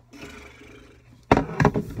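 Microphone handling noise: rubbing and knocks as the recording device is picked up and moved, starting suddenly about a second and a half in after a faint quiet stretch.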